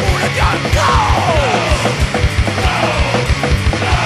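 Recorded hardcore punk song: fast, loud drumming with rapid kick-drum beats under a dense distorted band, with lines sliding down in pitch.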